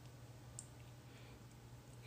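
Near silence with a low steady electrical hum, and a single faint computer-mouse click about half a second in.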